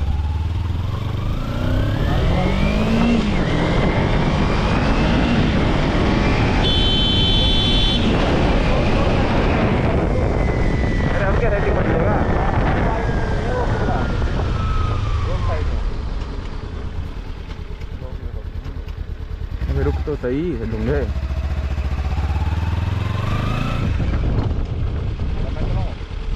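Motorcycle engine on a ride, revving up through the gears with rising pitch, running hard, then easing off with a long falling pitch and pulling away again near the end. A brief high horn-like tone sounds about seven seconds in.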